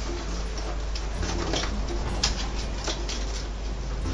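Soft handling noises from a snorkel and a nylon bag's front pouch as a velcro loop is fastened around the snorkel: light rustling and a few faint clicks in the middle of the stretch, over a steady low hum.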